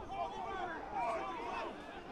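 Faint, overlapping shouts and calls of several voices on a rugby pitch during play, with no single voice standing out.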